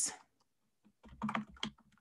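Typing on a computer keyboard: a short run of several keystroke clicks from about one second in.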